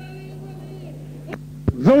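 Steady low electrical hum in a recorded sermon, with a faint voice under it during the first second, two sharp clicks about a second and a half in, then a man's voice starting loudly just before the end.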